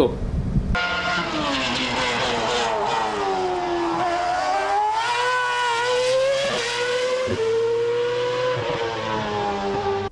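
Ferrari F10 Formula One car's 2.4-litre V8 engine at high revs. Its pitch falls for the first few seconds, climbs again as it accelerates, and holds high with a couple of quick steps before easing off near the end.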